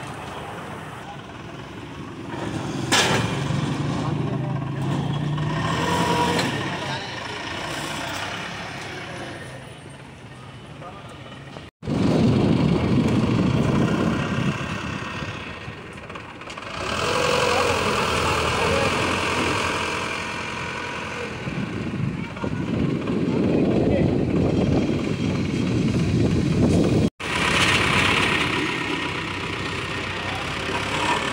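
Forklift engine running while it lifts and carries a heavy street-food counter, mixed with people's voices and street noise. The sound breaks off abruptly twice, at about 12 s and again near 27 s.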